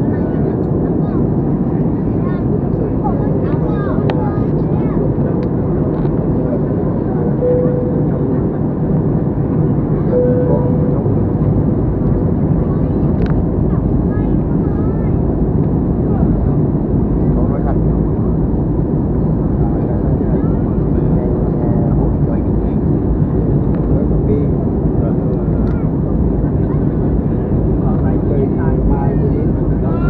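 Steady low roar of a jet airliner's cabin, the engines and rushing airflow heard from a window seat, with no change in level through the stretch.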